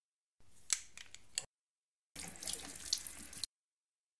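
Water poured from a glass bottle into a drinking glass, heard as two short spells of about a second each. There are a few sharp glassy clinks in the first spell, and each spell cuts off abruptly.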